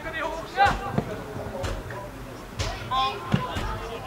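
A football kicked in a run of passes: four sharp thuds about a second apart. Players shout between the kicks.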